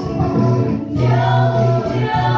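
Mixed church choir, women's and men's voices, singing in harmony on held chords with a strong low men's line; the sound dips briefly just before the middle as the choir moves to a new chord.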